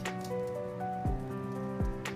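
Background music: sustained keyboard-like notes over soft, low drum beats.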